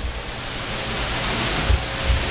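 Steady hiss spread evenly from low to high, growing slightly louder, with a low rumble underneath and a couple of soft low thumps near the end.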